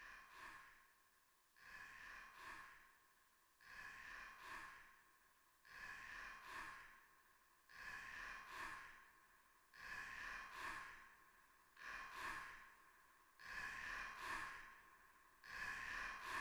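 Near silence with faint breathing: paired breath sounds about every two seconds, growing gradually louder toward the end.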